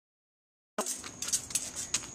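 Dead silence for almost a second, then sound cuts in abruptly: a run of small clicks and rattles over a faint steady high-pitched whine and low hiss.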